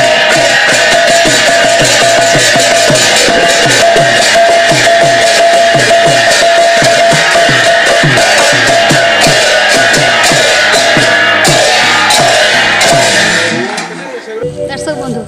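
A two-headed mridanga drum played fast, its low strokes dropping in pitch at about two to three a second, with large brass hand cymbals clashing rapidly over a steady ringing tone. The playing stops just before the end.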